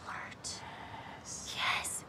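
Whispered, breathy voice sounds with no voiced tone: a short hiss about half a second in and a longer breathy whisper near the end.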